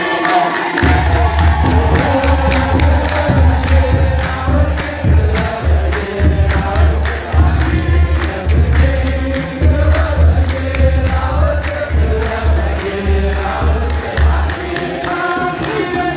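Ethiopian Orthodox wereb: a large group of clergy chanting in unison to the steady beat of a kebero drum, with a deep drum sound that comes in about a second in and drops out near the end.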